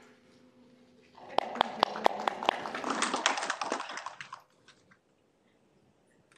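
Short round of applause from a small audience: clapping starts about a second in, runs for about three seconds and dies away.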